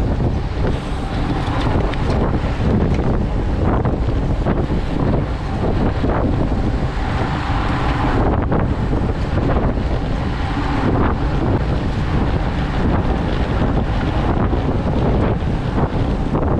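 Loud, steady wind noise buffeting the microphone of a camera on a road bike riding at about 30 km/h.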